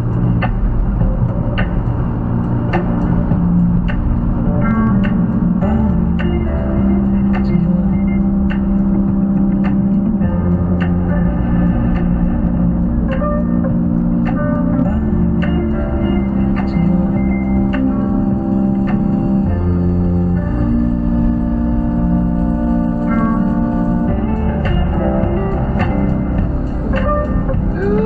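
Background music: a guitar-led track with long held notes over a steady bass line.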